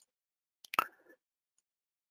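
Near silence broken by a single short click or smack about three-quarters of a second in.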